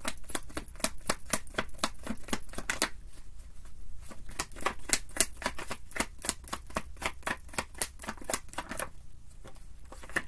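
Tarot deck being shuffled by hand, overhand style: a quick, continuous run of crisp card flicks and slaps, thinning briefly about three seconds in and dying away near the end.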